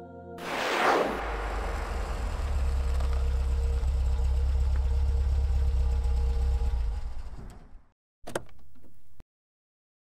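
A quick whoosh, then a car engine running with a steady low rumble that dies away about eight seconds in. Sharp clicks follow as a car door opens.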